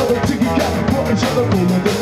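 A live rock band playing: drum kit keeping a steady beat, with electric guitar and bass guitar.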